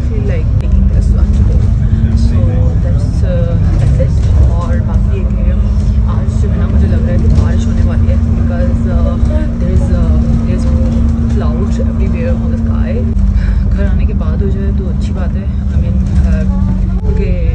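Bus interior: a heavy low engine and road rumble under a steady drone that rises in pitch as the bus pulls away, once near the start and again about four and a half seconds in, then drops near the thirteen-second mark.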